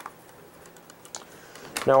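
Light plastic clicks and taps from CD jewel cases being handled, the sharpest click right at the start and a few fainter ticks after it.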